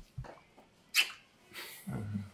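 Two people kissing and embracing: short, wet lip smacks and breaths, with one sharp smack about a second in.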